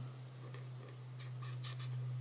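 Felt marker tip stroking across card stock as a stamped image is coloured in: faint scratchy strokes, a few close together a little past halfway, over a steady low hum.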